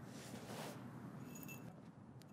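Faint handling of rib-knit fabric as it is smoothed flat and pinned at the shoulder, with a brief high tinkle about one and a half seconds in.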